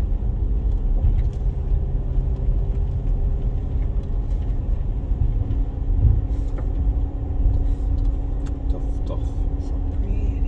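A 2010 Land Rover Freelander 2 driving slowly along a rutted dirt lane, heard from inside the cabin: a steady low engine and road rumble with a constant hum, and scattered light knocks as the car goes over the bumps.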